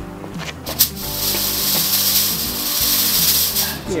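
A smoke machine blasting out a burst of smoke: a loud, steady hiss that starts just under a second in and cuts off shortly before the end, heard over background music.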